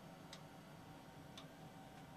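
Near silence: a faint steady hum of the space station's cabin ventilation, with two faint ticks about a second apart.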